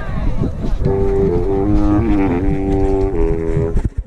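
A wind instrument holds a few sustained notes that step up and down, starting about a second in and stopping just before the end, over a steady low rumble.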